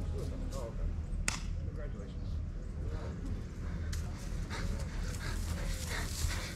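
Outdoor beach ambience: a steady low rumble of wind on the microphone under faint, distant voices, with a sharp click about a second in.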